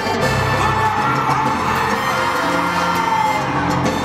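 Live salsa band playing at full level, with the crowd cheering and whooping.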